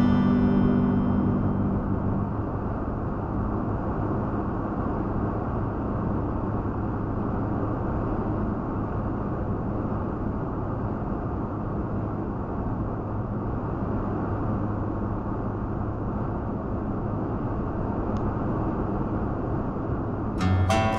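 Steady road and tyre noise with a low engine drone, heard from inside a Toyota Tacoma pickup's cab cruising at highway speed. Added music fades out over the first two seconds, and guitar music starts again right at the end.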